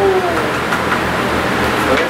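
Steady rushing air noise from electric wall fans, with a low rumble of moving air on the microphone; a brief voice sounds right at the start.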